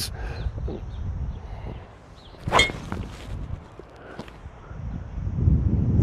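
A golf driver striking a teed-up ball: one sharp click with a short metallic ring about two and a half seconds in, over faint low outdoor background noise.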